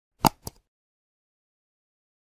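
Mouse-click sound effect played twice in quick succession, a louder click followed by a softer one about a quarter of a second later, as the animated cursor clicks the notification bell.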